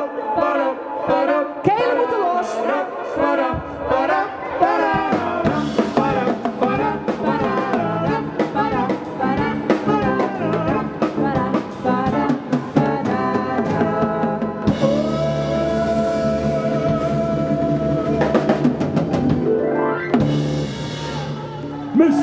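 A live jazz band playing with a voice singing quick, bending scat lines over it; the drums and bass come in about three and a half seconds in. Near the end a long held note sounds, followed by a quick rising glide.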